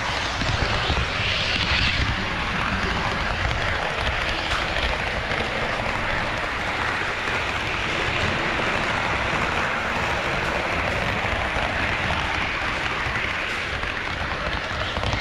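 HO-scale model train running on KATO Unitrack, heard close up from a camera riding on the train: steady wheel-on-rail rolling noise.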